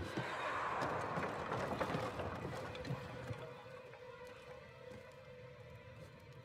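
Film soundtrack: a low sustained music tone under a noisy swell of crowd commotion with scattered thuds. It is loudest in the first two seconds and fades away after.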